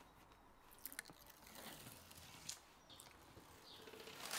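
Near silence, with a few faint ticks and rustles from hands working on a painted wooden window frame, the clearest about a second in and again past halfway.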